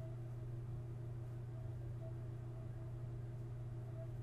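Steady low hum of the recording's background noise, with faint higher steady tones above it and no other event.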